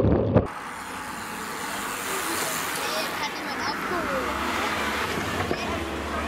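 Wind rumbling on a bike-mounted action camera, cut off abruptly about half a second in. Then a steady outdoor hiss with faint, distant voices.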